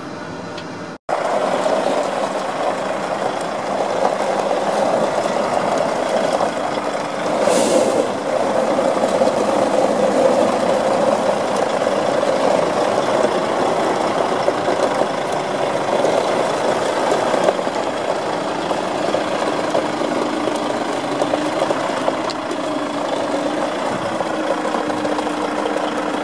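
Diesel tipper truck engine idling steadily, heard from beside the truck, starting about a second in; a short hiss cuts in once, about seven and a half seconds in.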